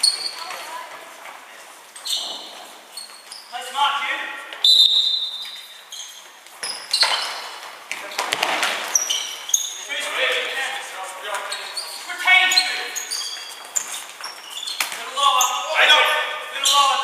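Indoor futsal play on a wooden hall floor: sharp thuds of the ball being kicked and hitting the floor, short high squeaks of shoes on the boards, and players calling out, all echoing in the large hall.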